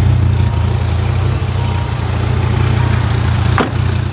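Dodge Viper RT/10's 8.0-litre V10 idling steadily, with a brief dropout near the end.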